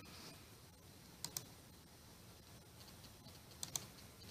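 Two quick double clicks on a computer's controls, one about a second in and one near the end, faint over low room hiss.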